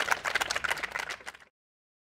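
A small audience clapping in a rapid, irregular patter that cuts off suddenly about one and a half seconds in.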